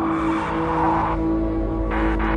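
Film-trailer sound design: a sustained low music drone with a hissing whoosh over it that cuts off about a second in, then a second short burst of hiss near the end.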